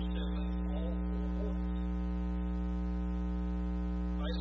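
Steady electrical mains hum, a low buzz with a ladder of overtones, with faint wavering sounds over it in the first second or so.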